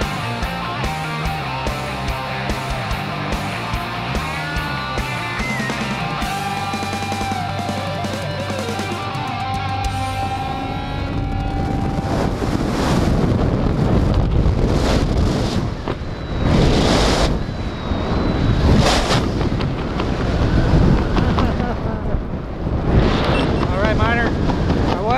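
Background music with a steady beat that fades out about halfway through, giving way to wind rushing over a handheld camera's microphone under an open tandem parachute canopy, rising and falling in loud gusts.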